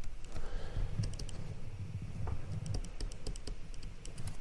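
Stylus pen tapping and scratching on a tablet screen while handwriting: a string of light, irregular clicks over a low rumble.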